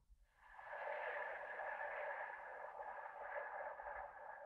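A long, slow, faint exhale through the mouth, starting about half a second in and tailing off near the end.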